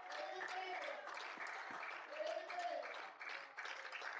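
Faint scattered hand-clapping from a small church congregation, with quiet voices in the background.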